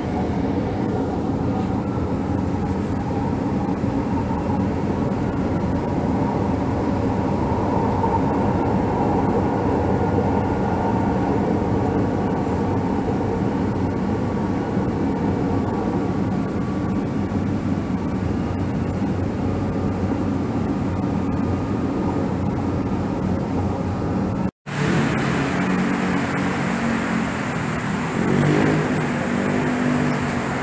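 Steady running noise inside a crowded light-rail train car in motion, with a faint whine above the rumble. About 25 seconds in, the sound cuts out abruptly and is replaced by steady road traffic heard from an elevated station beside a highway.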